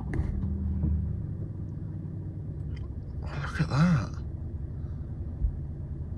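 Range Rover Sport diesel engine starting, heard from the driver's seat: it catches at once, runs a little louder for the first second, then settles into a steady low idle.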